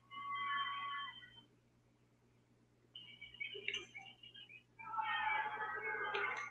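Faint soundtrack audio from an animated film: three short bursts of high, wavering, cry-like tones, the last and longest near the end.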